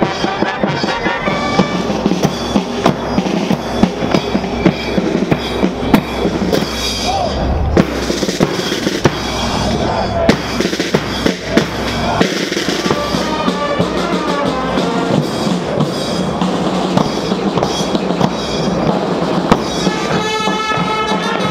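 Military marching band playing brass instruments over a steady marching beat on bass drum and drums.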